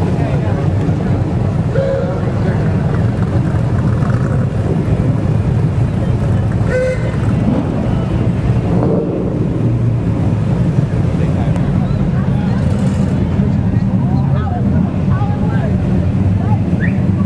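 Engines of classic cars driving slowly past, a steady low rumble, with the voices of a crowd over it.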